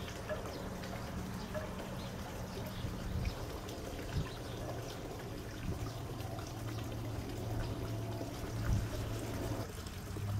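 Garden pond water trickling and pouring steadily, the running water of the pond's bog filter, with a low steady hum underneath.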